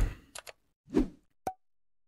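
Computer mouse clicks: two faint ticks, then a sharper click with a brief ringing pop about one and a half seconds in. A short soft breath-like rush comes between them.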